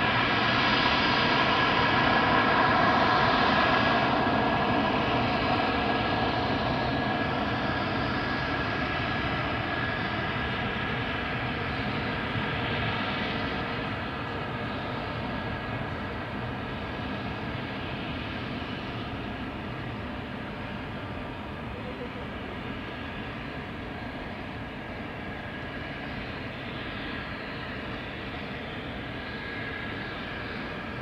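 Mitsubishi F-2 fighter's single jet engine running at low power as the jet taxis along the runway, heard from a distance. It is a steady rush with a high whine, loudest in the first few seconds and then slowly fading.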